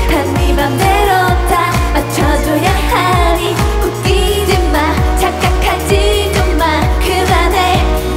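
K-pop girl group singing live over a dance-pop backing track with a steady, heavy bass beat.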